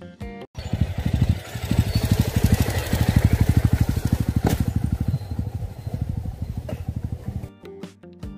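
Motorcycle engine running at low revs with even, distinct firing pulses as the bike passes close by on a rough stony track, growing loud and then fading as it rides away. Two sharp knocks come partway through, about four and a half and near seven seconds in. Guitar music cuts out just after the start and comes back near the end.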